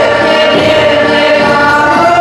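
Live dance music from a Polish backyard folk band (kapela podwórkowa), with several voices singing together over the instruments; loud and steady.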